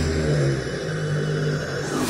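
Deep, sustained rumbling growl from a cartoon horned monster, held at a steady low pitch.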